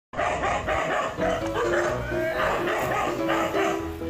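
A dog barking over and over in quick succession, with background music underneath.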